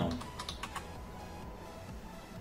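Typing on a computer keyboard: a quick run of key clicks in the first second or so, then quieter.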